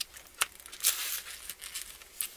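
Washi tape being cut from its roll with an X-Acto craft knife: a sharp click, then a short papery rip about a second in, followed by a few light taps.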